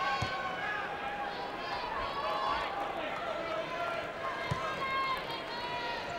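Basketball arena crowd: many voices talking and calling out at once over a steady din, with one low thump about four and a half seconds in.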